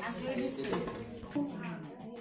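Women's voices talking, with light clinks of steel plates.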